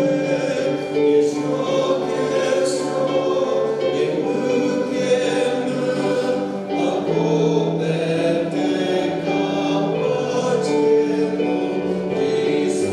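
Choral singing: many voices singing together in harmony, with long held notes that change every second or two.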